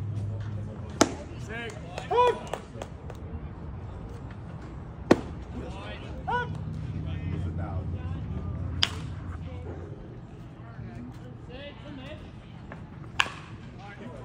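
A pitched baseball popping into a catcher's leather mitt, four sharp pops several seconds apart, with short shouted calls between them.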